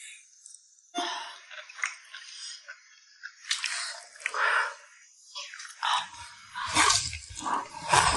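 Close-up eating sounds: people slurping and chewing crisp beef tripe in a spicy broth, in irregular wet bursts with a few light clicks, busier toward the end.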